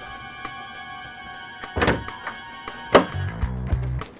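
Background music with a ticking beat, cut by two loud thunks from a car about two and three seconds in: the door and hood latch as the hood is popped open.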